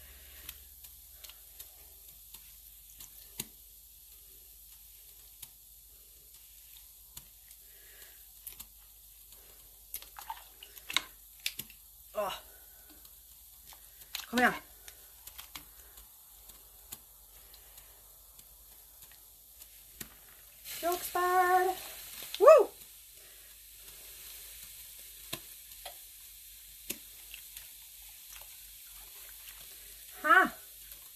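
Wet hand-dyed yarn being turned with tongs in a steel dye pot: faint sloshing and stirring, with small clicks of the tongs against the pot. A few short vocal sounds come in the middle, and the loudest, a brief hum-like voiced sound, comes about two-thirds of the way through.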